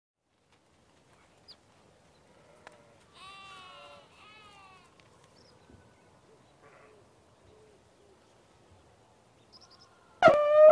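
Sheep bleating faintly: two wavering bleats about three seconds in, with a few fainter calls later.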